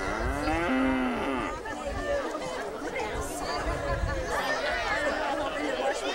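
A Holstein cow mooing once at the start, a single long call of about a second and a half that rises and then falls in pitch, over the chatter of a crowd.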